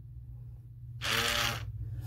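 A Hadineeon automatic foaming soap dispenser's small pump motor runs briefly, about half a second, about a second in, as it dispenses foam onto a hand. A faint low hum runs underneath.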